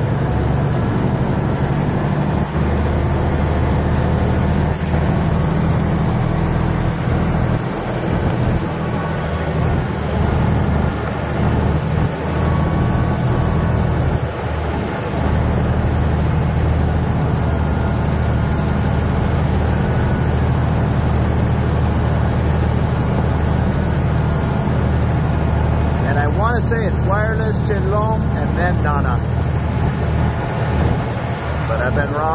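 Diesel engine of a Bangkok canal water taxi running loud and steady as the boat travels, a deep drone with a thin high whine above it.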